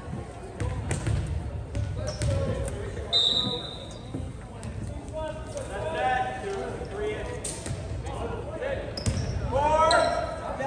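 A volleyball bouncing and being struck on a hardwood gym floor in a large, echoing gym, with a short high referee's whistle about three seconds in. Players' voices call out, louder near the end.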